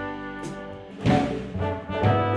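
Live jazz band playing: brass horns holding long notes over bass, with a sudden louder full-band accent about halfway through.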